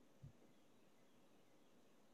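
Near silence: faint room tone, with one brief, soft low thump about a quarter of a second in.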